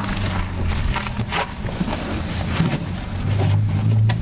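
Clicks and knocks of an old vehicle's driver door being opened and someone climbing into the seat, over a steady low hum that grows a little louder near the end.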